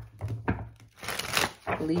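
A tarot deck being shuffled by hand: cards sliding and slapping against each other in a few short strokes.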